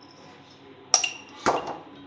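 A metal spoon clinking twice, about a second in and again half a second later, the first with a brief metallic ring.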